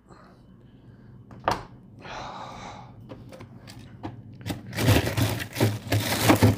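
Frozen food bags and freezer shelves being handled, with scattered clicks and knocks, then a dense clatter and rustling of plastic that grows louder near the end.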